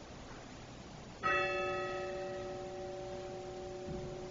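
A bell struck once about a second in, then ringing on and slowly fading, its higher tones dying away first. A soft knock comes near the end.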